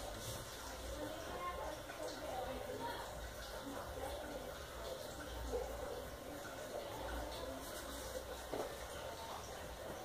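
Faint pencil sketching on paper, with faint voices in the background.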